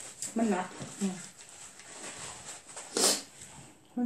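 A woman's voice says a few words in Thai in the first second, followed by quieter table sounds and one brief sharp noise about three seconds in.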